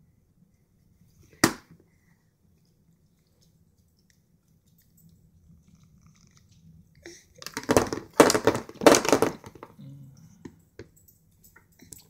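A hard plastic sippy cup knocking on a plastic high-chair tray: one sharp knock about a second and a half in, then, after a quiet stretch, a dense couple of seconds of rapid knocks and scuffs, tailing off near the end.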